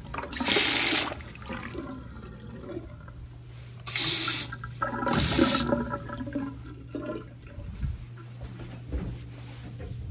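Vintage sink faucet turned on and off in short spurts, water running into the porcelain basin three times, each for under a second, over a steady low hum.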